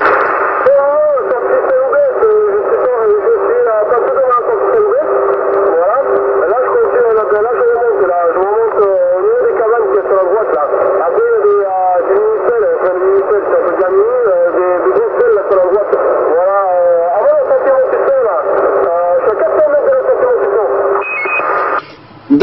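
Another operator's voice received over a CB radio transceiver, speaking continuously through the set's loudspeaker with the thin, narrow-band sound of a radio receiver. A steady low tone runs under the voice.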